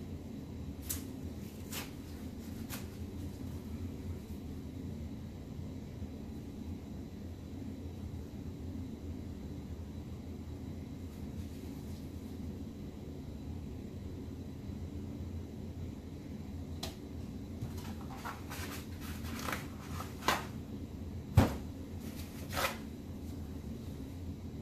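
Steady low hum of room noise, with scattered light clicks and knocks from handling the paper towel and panel: a few soft ones near the start and a cluster near the end, one much louder knock among them.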